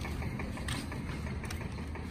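A steady low mechanical hum, like a motor or engine running, with two faint light taps.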